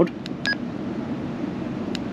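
TIDRADIO TD-H8 handheld transceiver giving one short electronic key beep about half a second in as its VFO/MR key is pressed to switch into VFO mode. A button click comes near the end, over steady faint background noise.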